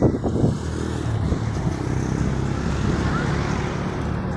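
Road traffic passing close by: a steady engine rumble and tyre noise that builds after the first second.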